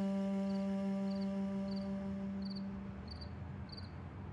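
A held note of background score music, one steady pitch with rich overtones, fading away over the first three seconds. Under it a cricket chirps evenly, about three chirps every two seconds.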